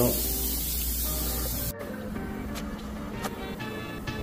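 Bathroom sink faucet running, a steady hiss of water, over background music; the hiss cuts off suddenly a little under two seconds in, leaving only the music.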